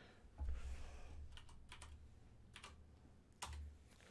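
Faint typing on a computer keyboard: a handful of separate keystrokes as a value is typed in, with a low dull rumble about half a second in and again near the end.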